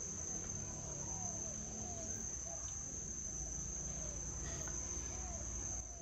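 Steady, high-pitched insect chorus, a continuous shrill drone typical of crickets, with a faint low hum beneath.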